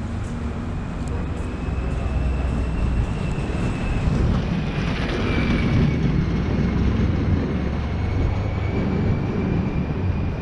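City street traffic noise: a steady low rumble with a faint, thin high whine held over it.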